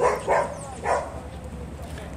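A dog barking: three short barks in the first second, then only low background.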